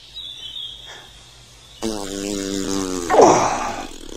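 A long fart begins about two seconds in, holding a steady pitch, then swells louder and falls in pitch near the end.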